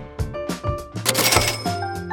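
Background music with a steady beat. About a second in, a cash-register 'ka-ching' sound effect rings briefly as the remaining balance is tallied.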